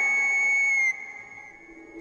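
A comic whistle-like sound effect on the soundtrack. A single high tone is held for about a second, then fades away.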